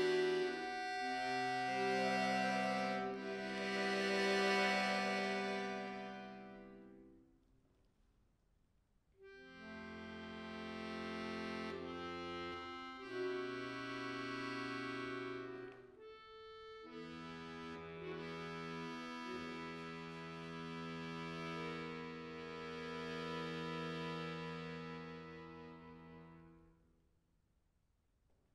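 Chromatic button accordion (bayan) playing slow, long held chords. The first chord fades out about seven seconds in; after a short silence the playing resumes with more sustained chords, briefly broken once midway, and dies away at the end.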